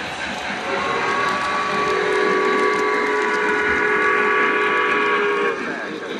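A model Santa Fe 3755 steam locomotive's sound system blows one long chime steam whistle, several notes held together for about five seconds. Under it runs the steady noise of the train running on three-rail track.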